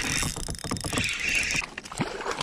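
A hooked largemouth bass splashing and thrashing at the water's surface beside a kayak, a busy run of splashes.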